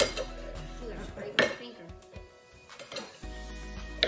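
Kitchen knives cutting vegetables, with sharp knocks of a blade on a plastic cutting board at the start and again about a second and a half in, among lighter clinks of knife and plate.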